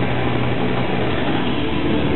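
Heavily distorted electric guitars and bass holding one loud, steady droning chord in a live rock band, with no drum hits standing out.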